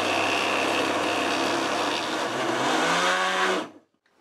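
Tefal food processor motor running steadily as it chops dried tomatoes, shiitake, capers and anchovies into a thick paste; its pitch rises slightly just before it cuts off near the end.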